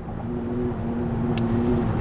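Car engine and road noise heard from inside the cabin while driving at highway speed: a steady hum that grows gradually louder. A brief click about one and a half seconds in.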